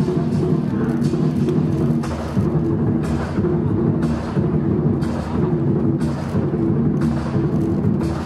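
Lion dance drum and percussion music played live: a big drum rumbling under a steady beat, with sharp crashes recurring about once or twice a second and ringing tones held beneath.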